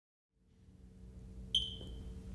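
Produced intro sound effect for a logo: a faint low hum fades in, then about one and a half seconds in a sudden high-pitched ping rings out and slowly fades.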